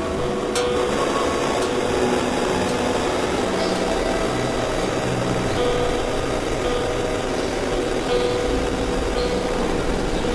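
Dense, layered experimental electronic noise music: a continuous wash of drone and noise with faint held tones that fade in and out, a sharp click about half a second in, and a low rumble that builds in the second half.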